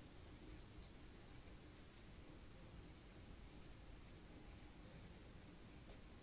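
Faint scratching of a pen writing on a paper workbook page.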